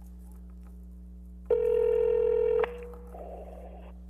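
A telephone line tone: one steady electronic beep about a second long, beginning about a second and a half in and cutting off sharply. It sounds over a constant low electrical hum from the sound system and is followed by a brief softer rush of line noise, as a remote caller's phone connection comes through.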